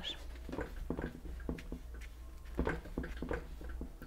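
A paintbrush pressed and dabbed against paper, giving scattered light taps and scrapes, over a steady low hum.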